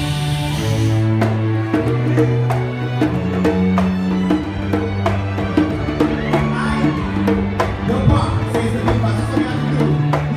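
Live orchestral music: strings play held low notes that shift in pitch every second or so, under a beatboxed percussive beat.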